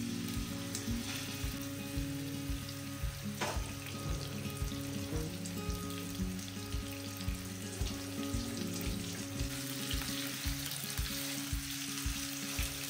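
Food frying in a pan, with a steady sizzle throughout. Background music with a low, regular beat plays underneath.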